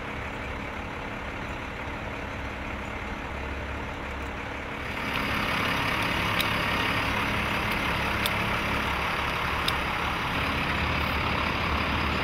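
Steady low rumble of a truck engine idling, under outdoor background noise. About five seconds in, the background gets louder and hissier, and a few faint clicks follow.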